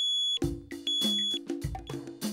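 Digital alarm clock radio beeping: two steady, high-pitched beeps about half a second long each. Music with a drum beat starts under it about half a second in.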